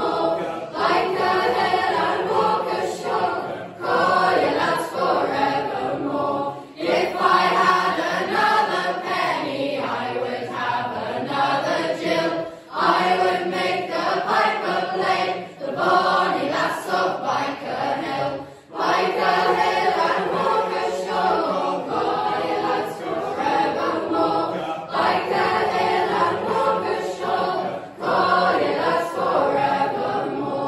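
Mixed youth choir singing a folk song in harmony, with short breaks between phrases.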